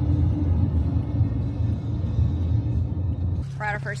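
Low, steady rumble of a car driving, heard from inside the cabin, until a cut near the end.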